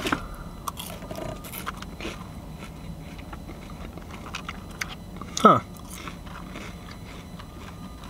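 A person biting into and chewing a curly fry, with small, irregular crunching clicks throughout.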